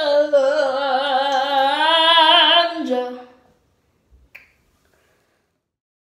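A girl singing long held notes with a wavering vibrato, the pitch sliding down before she stops about three seconds in. A single faint click follows.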